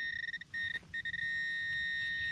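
Metal-detecting pinpointer giving a steady high electronic tone as it is worked in the hole, cutting out twice in the first second and then holding unbroken: it is sounding on a buried metal target close by, here a fired bullet.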